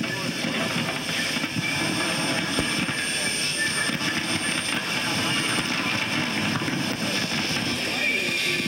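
Indistinct voices under a steady roar of background noise, with no clear music.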